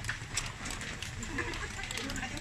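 Bustle at a food stall: irregular sharp clicks and taps over faint murmured voices.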